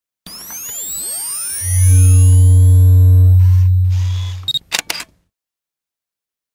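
Logo intro sound effect: swirling, sweeping tones rise and fall, a loud deep hum swells and holds for about three seconds, then it ends in a quick run of sharp camera-shutter clicks before cutting to silence.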